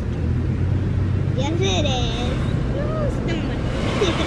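Young children's voices, a few short utterances, over a steady low hum.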